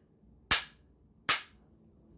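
Two sharp claps of a bamboo clapper, just under a second apart.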